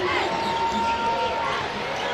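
Basketball arena crowd noise during live play, with a thin steady tone held for about a second shortly after the start.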